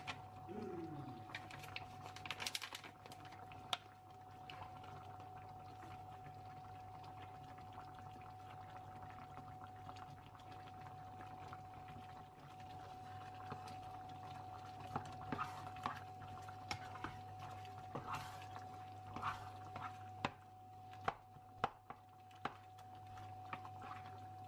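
Thick creamy chicken and mushroom sauce in a nonstick frying pan being stirred with a plastic spatula as curry sauce from a foil pouch is added, giving wet, liquid sounds with scattered clicks and light scrapes. A steady hum runs underneath, and sharper clicks and scrapes come in the second half.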